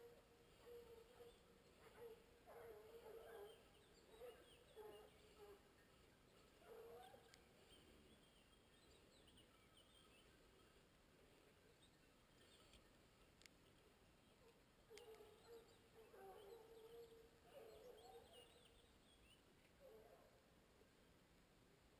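Hounds giving tongue far off on a wild boar's trail: faint, repeated baying in clusters during the first six seconds and again from about fifteen seconds in.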